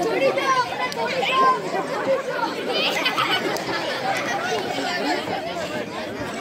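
Several voices talking over one another in a steady chatter, with no single clear speaker.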